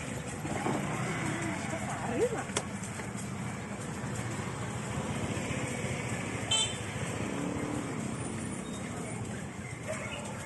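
Busy street ambience: chatter of people walking along the lane mixed with motorbike and traffic noise, with a short high-pitched sound about six and a half seconds in.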